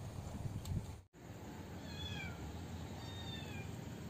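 Faint, short, high animal calls, each sliding down in pitch, repeating about once a second over quiet outdoor background noise, after a brief drop-out about a second in.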